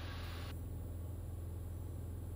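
Cirrus SR20 piston engine and propeller running steadily in flight, heard faintly as a low, even drone with a light hiss.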